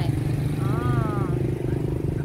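Motorcycle engine running with a steady low rumble, with street traffic behind it.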